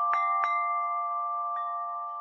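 Music of bell-like chimes: a few struck notes ringing over several held tones.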